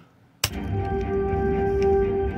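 Film soundtrack music played back from an editing timeline. After a brief silence it starts suddenly, about half a second in, with a steady held tone over low bass.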